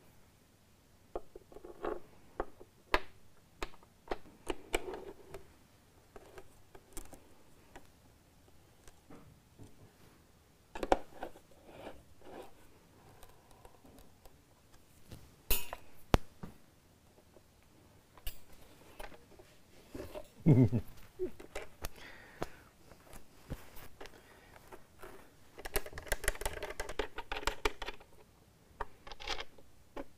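Scattered clicks, taps and small knocks of metal guitar hardware being handled and fitted on a clear acrylic guitar body, with a short laugh about twenty seconds in and a busier run of clicks near the end.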